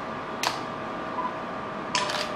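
Camera shutter clicks as a posed group is photographed, two short sharp clicks about half a second in and near the end, over faint steady room tone.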